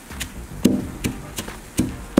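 Frozen, brittle flower petals cracking and shattering as a glass is pressed and knocked down on them: about five sharp crunches over two seconds.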